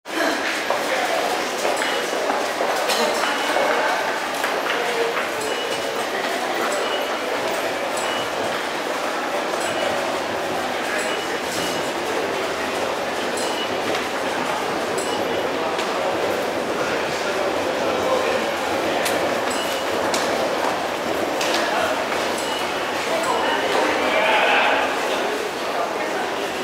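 Busy subway station concourse ambience: many footsteps, indistinct commuter voices and the murmur of a large underground hall. A short high beep repeats evenly, about one and a half times a second, for several seconds in the first half.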